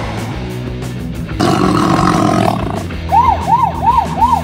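Background music, with a dinosaur roar sound effect for about a second starting a second and a half in. Near the end, a siren sound starts, rising and falling about three times a second.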